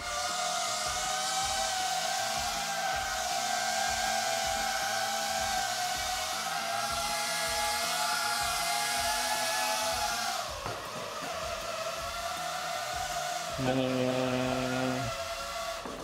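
Small ducted FPV drone (cinewhoop) hovering and manoeuvring: a steady high whine from its propellers. The pitch dips briefly about ten and a half seconds in as the throttle changes, then recovers. A lower steady hum joins briefly near the end.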